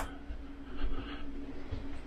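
A single click of a ceiling LED light's push button right at the start, then quiet room tone with a steady faint hum.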